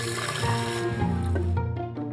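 Background music with held notes, over liquid being poured and sloshed out of a spittoon; the pouring stops about one and a half seconds in.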